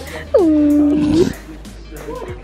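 A person's voice in one long drawn-out sound that drops in pitch and then holds for about a second, over background music.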